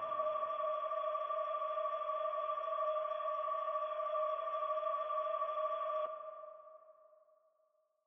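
Held electronic synth tone at the close of a song, two steady pitches with no beat under it. About six seconds in it stops and rings away to silence.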